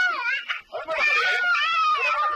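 A young child wailing: a long, held cry that falls away just after the start, then another long cry from about halfway through that also drops in pitch at its end.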